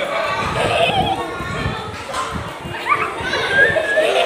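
A room full of children chattering and calling out over one another, with a high rising call near the end.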